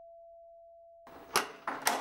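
A fading ringing tone dies away in the first second. Then a front door's latch clicks twice, about half a second apart, as the door is unlocked and opened.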